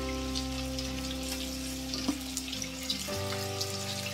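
Pointed gourds (potol) frying in hot oil in a wok, a continuous crackling sizzle with small pops of spitting oil. Soft background music with sustained notes plays underneath, changing chord about three seconds in.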